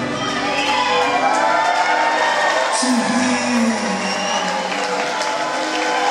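A live rock band plays on while the crowd cheers and whoops in the hall.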